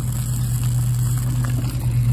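A steady low mechanical hum, like a motor running, holding one pitch throughout.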